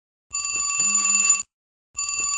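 Mobile phone ringtone: an electronic, bell-like ring of steady high tones. One ring starts about a third of a second in and lasts about a second, and the next ring starts after a half-second gap, at the very end.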